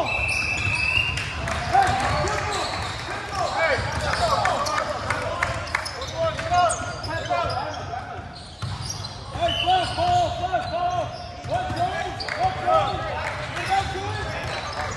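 A basketball being dribbled on a hardwood gym floor during a game, with sneakers squeaking in short, repeated chirps and players' voices calling out, all echoing in a large gymnasium.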